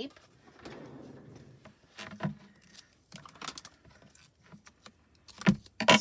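Roll of foam mounting tape being handled and a strip pulled from it: a rustling tear in the first two seconds, then scattered light clicks and two sharp clicks near the end.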